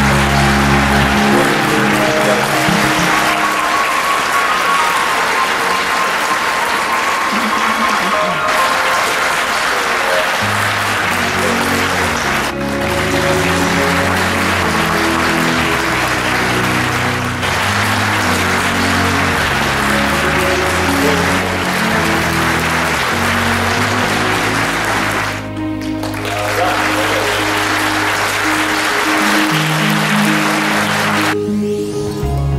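Audience applauding continuously under background music with a changing melodic line.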